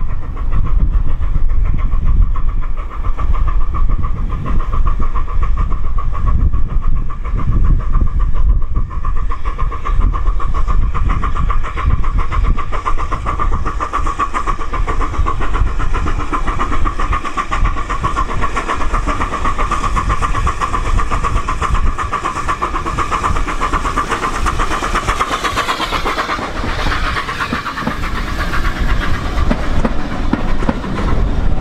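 Steam tank locomotive hauling a passenger train, working steadily as it comes round the curve, its sound growing closer; near the end the coaches roll past close by with wheel and rail noise.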